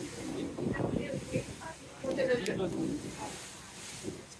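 Indistinct chatter of people on a moving tour boat, heard over a steady hiss of wind and rushing water.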